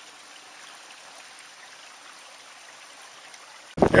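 Faint, steady trickle of water in a shallow creek. Just before the end it cuts suddenly to loud wind on the microphone and a man's voice.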